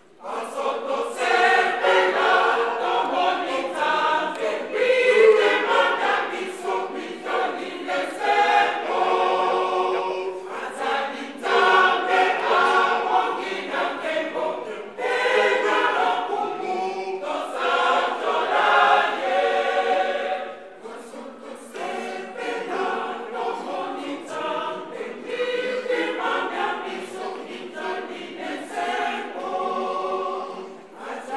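A large church choir singing a hymn together. It comes in sharply at once, sings in long phrases with short breaks between them, and grows softer about two-thirds of the way through.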